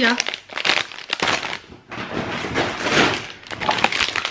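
Plastic sweet packets crinkling and rustling as they are handled and shuffled, with many small irregular crackles.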